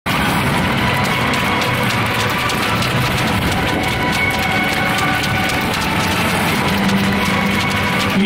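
Music played over a football stadium's public-address system, steady in level, with a dense crackle of fine clicks running through it.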